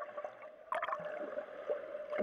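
Water sound picked up by a camera held underwater: a faint steady hum with scattered crackles, and a short crackling burst a little under a second in.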